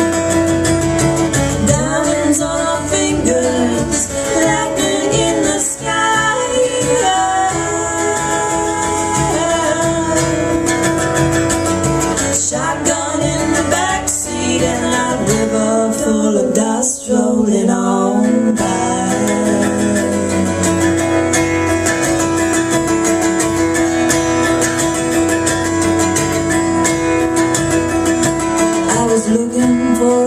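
Live acoustic song: strummed acoustic guitar with a cajon beat. A woman's voice sings through roughly the first half, then guitar and cajon carry on with little or no singing until near the end.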